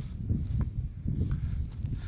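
Wind buffeting the microphone in an uneven low rumble, with a few faint light ticks and rustles.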